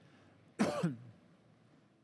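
A single short cough, close to the microphone, about half a second in.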